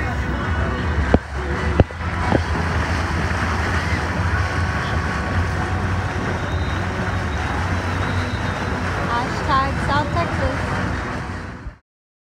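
Motorboat underway: the motor is a steady low drone under wind and rushing water on the microphone. There are a few sharp knocks in the first two or three seconds, and a short run of high wavering calls near the end.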